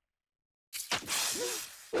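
Cartoon sound effect: after a moment of silence, a sudden loud crashing, shattering noise lasting about a second, with a short cry-like pitched sound inside it and a second brief burst at the end.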